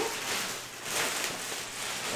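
Soft rustling handling noise as a foam model jet fuselage is turned over in hands.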